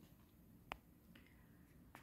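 Near silence: room tone, broken by a single short, sharp click about two-thirds of a second in.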